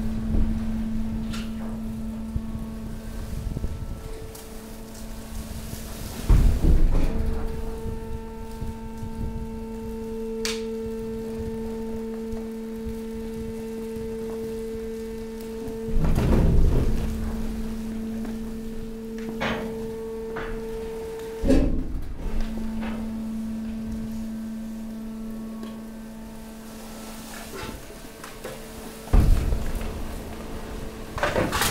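Hydraulic waste compactor working: a steady hydraulic pump hum whose tone changes several times as the ram cycles. Heavy thuds come about 7, 16 and 29 seconds in as the ram pushes and compresses the mixed waste.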